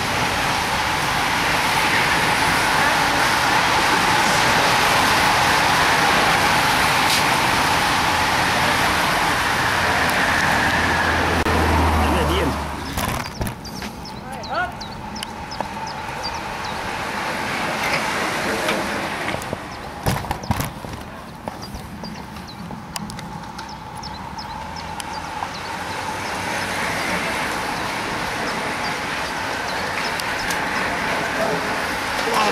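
A large pack of road-racing bicycles sweeping past: a loud rushing hiss of tyres and wind that cuts off abruptly about twelve seconds in. After it comes a quieter stretch with scattered clicks as a smaller group of riders passes.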